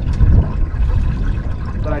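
Water sloshing around a small boat, with wind rumbling on the microphone, loudest in the first half second.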